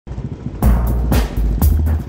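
Background electronic music with a heavy bass and a steady beat of about two hits a second, which comes in loud about half a second in.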